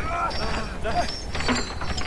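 A mechanical creaking and clicking sound effect with a constant low rumble, under a man's strained, wordless vocal sounds at the start and about a second in, with a sharp click about a second and a half in.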